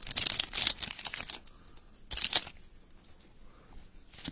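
Foil trading-card pack wrapper being torn open and crinkled by hand. It crackles for about the first second, then comes a second short burst about two seconds in, and softer rustling after that.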